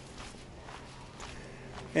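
A few soft footsteps on a dirt path over faint outdoor background noise.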